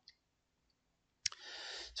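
Mostly quiet, with one sharp click a little over a second in, followed by a soft hiss.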